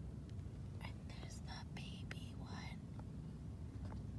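Faint whispered speech, a few breathy words about a second in lasting roughly two seconds, over a low steady rumble.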